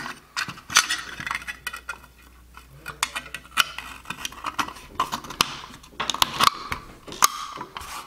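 Two halves of a thin aluminum case being pressed and fitted together by hand: a run of sharp clicks and light scrapes of metal on metal, with a quieter stretch about two seconds in.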